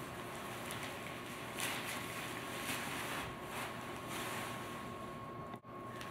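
Soft fabric rustling in a few brief swells as feet are worked through the foot holes of a large skirt cover, over a steady background hiss with a faint steady tone.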